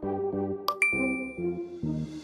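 A short click and then a single bright ding, about a second in, ringing out for most of a second over background music: the quiz's chime marking that the countdown has run out and the answer is revealed.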